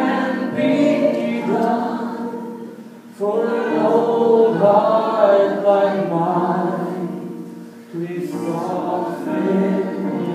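Music: voices singing a slow worship song in three long phrases, with grand piano accompaniment.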